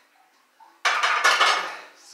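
A loaded steel barbell racked onto a power rack's J-hooks: a sudden metal clank with the iron plates rattling, starting a little under a second in and dying away over about a second.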